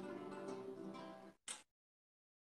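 Nylon-string classical guitar fingerpicked in a quick run of notes for a speed exercise, cutting off abruptly about a second and a half in, followed by a brief burst of noise.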